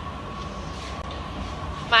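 Steady rumble of a glass studio's gas-fired glory hole burning, with a thin steady whine over it.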